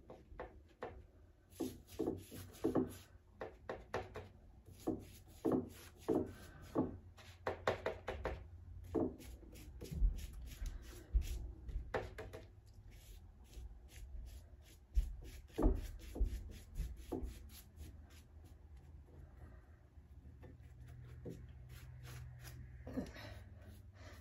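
A paintbrush dabbing and brushing a glue-and-water mix onto a paper napkin laid over a glass jar, heard as a run of irregular soft taps, with a few dull low knocks partway through. The taps thin out over the last several seconds.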